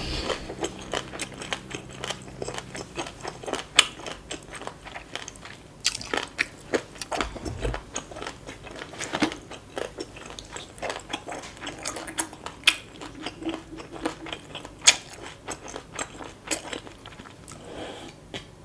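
Close-miked chewing of crunchy shredded green papaya salad: a dense, irregular run of wet crunches and mouth clicks, several a second.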